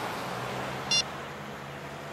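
Steady low engine hum of a moving car heard inside its cabin, with one short high electronic beep about a second in from a mobile phone ringing.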